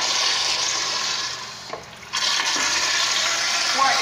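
Eljer Signature pressure-fed toilet flushing, with water rushing through the bowl. The rush fades about a second and a half in, then comes back abruptly with a fresh surge just after two seconds. The flush is failing to clear the paper from the bowl.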